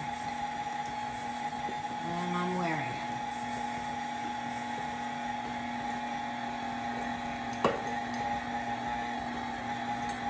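Electric stand mixer running steadily on low speed (about setting two) while liquid is poured into the flour; its motor gives a steady whine. A single sharp knock comes about three-quarters of the way through.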